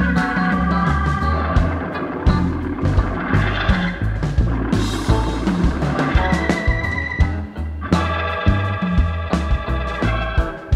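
Live rock band playing an instrumental passage: organ chords carry over a steady drum beat and a moving bass line.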